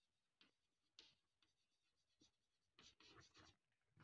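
Faint scratching of chalk on a blackboard in short strokes as words are written.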